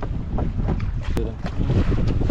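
Wind buffeting the microphone in an uneven low rumble, with faint ticks and one sharp click a little over a second in.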